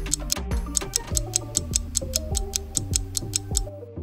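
Quiz countdown-timer music: a steady clock-like ticking, about four ticks a second, over bass and melody notes. It fades out just before the end.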